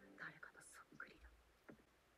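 Near silence, with a faint, breathy voice in the first second and a few small clicks after it.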